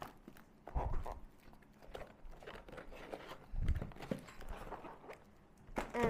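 Handling noise as a small cardboard box and its contents are packed away and moved on a table: two soft thumps, one about a second in and one past the middle, with light rustling and clicks between.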